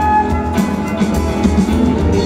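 Live band playing an instrumental passage of an indie-pop song: a drum kit keeps a steady beat under bass, guitar and violin.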